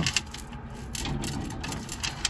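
Small pieces of costume jewelry clinking and rattling against each other and the glass display shelf as a hand picks through them and lifts out a necklace: a run of light, irregular clicks.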